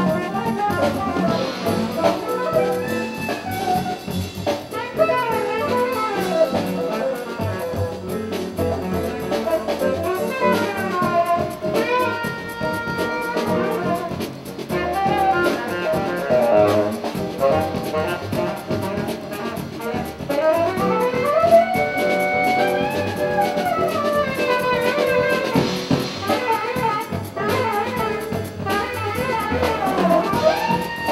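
Live post-bop jazz from a small combo: a saxophone plays a winding melodic line over drum kit and rhythm section, with phrases that swoop up and down in pitch.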